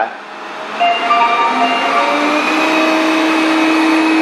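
Proscenic M7 Pro robot vacuum's suction motor spinning up to its highest power setting. After a brief quieter moment at the start, the noise grows louder about a second in, its whine stepping up in pitch before settling into a steady, louder running sound.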